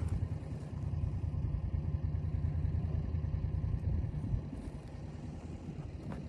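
A vehicle engine running steadily at low revs, a low rumble.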